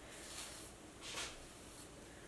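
Faint strokes of a hairbrush through long hair, with two soft swishes about half a second and a second in.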